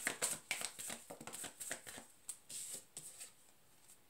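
A tarot deck being shuffled by hand: a rapid run of card flicks that thins out after about two seconds and stops.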